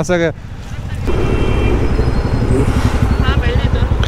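Motorcycle engine running on the move, its low firing pulses growing loud from about a second in.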